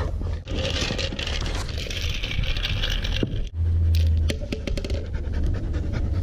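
A Siberian husky panting while ice cubes rattle in a paper cup and clatter out in a quick run of clicks about three and a half seconds in.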